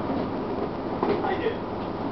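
The Detroit Diesel Series 50 inline four-cylinder diesel of a 1999 Gillig Phantom transit bus running, a steady low drone heard from inside the passenger cabin.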